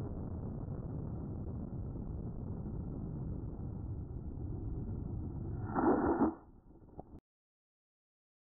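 Muffled, steady rushing noise of a model rocket in powered flight, picked up by a camera riding on its body while the motors burn. About six seconds in there is a louder burst, then the sound drops, gives one click and cuts off abruptly.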